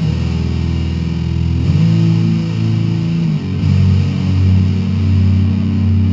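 Instrumental goth rock passage: distorted, effects-laden electric guitar chords held over bass, the chord changing twice.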